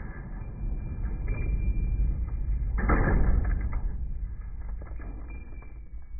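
Slowed-down, deep audio of a 5.56 rifle shot tearing through a full can of beans: a long, dull rumble with a second swell about three seconds in, slowly fading.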